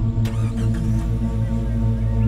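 Dramatic background score: held tones over a steady low drone, with a short sharp accent about a quarter second in.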